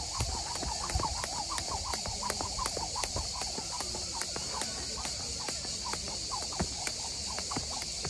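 A plastic skipping rope slaps the dirt ground in a steady rhythm, about two or three sharp ticks a second, as it is jumped. Behind it is a steady high hiss with lots of short chirping.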